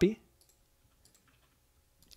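A few faint computer mouse clicks, sparse and spread through the quiet after a spoken word ends.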